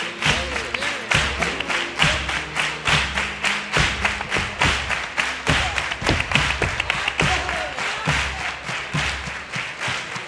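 Carnival comparsa's instrumental accompaniment: Spanish guitars with percussion playing a fast, steady rhythm of sharp strikes over low held notes.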